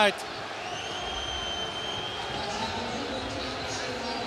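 Football stadium crowd noise after a goal, a steady roar of the terraces. About half a second in, a single high whistle starts and is held for about two seconds.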